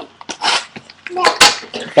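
Plastic shrink wrap on a cardboard card box crinkling and tearing under the hands, in a few short scratchy rips.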